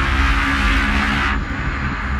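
Sound design for an animated logo sting: a loud rushing whoosh over a low rumble and drone. The rush cuts off about one and a half seconds in, leaving the drone to fade.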